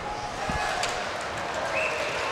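Faint ice-hockey arena ambience: a low murmur of crowd noise, with a single sharp knock about half a second in.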